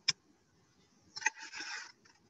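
A sharp click, then about a second later two more clicks and a short rustling scrape, like objects being picked up and handled.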